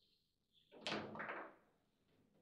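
Foosball table in play: a sharp knock about a second in, the ball struck by a player figure on a rod, followed by a short clatter of ball and rods.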